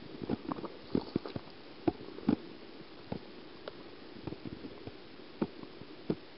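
Irregular soft clicks, knocks and small water sounds from a hand holding a common toad over pond water and lowering it in. They come unevenly, several a second in places, with the densest cluster in the first two and a half seconds.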